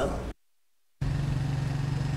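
A woman's voice breaks off into dead silence for about two-thirds of a second, then a steady low mechanical hum comes in and holds level.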